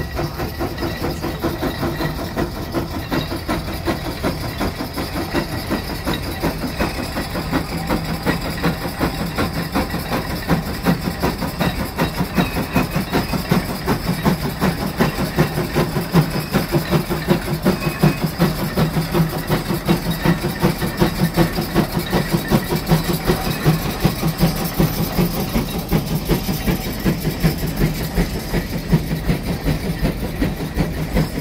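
The exhaust of a 150 HP J.I. Case steam traction engine chuffing in a rapid, even beat as it works under heavy load, pulling four steam engines uphill. The beat grows louder through the middle as the engine passes close by, then eases off near the end.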